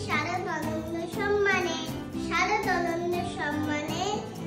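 A young girl singing over background music.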